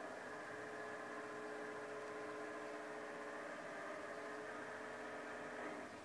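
A standing LGB model RhB electric railcar's standstill sound, a steady electric hum made of several held tones. It dips away just before the end.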